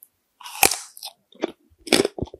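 Close-miked bite into a yellow Pikachu-shaped candy: a loud crunch about half a second in, then three shorter chewing crunches.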